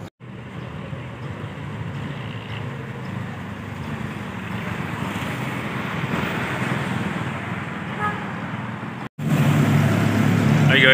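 Street traffic noise, a steady rumble and hiss of passing vehicles that grows gradually louder over several seconds.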